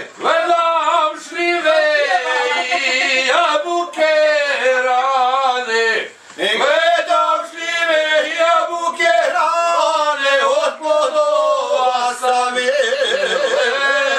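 A group of men singing together unaccompanied, holding long wavering notes, with a short pause for breath about six seconds in.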